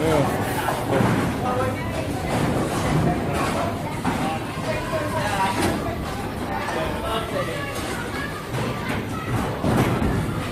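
Indistinct talking and background chatter of several people, with no clear bowling-ball roll or pin crash standing out.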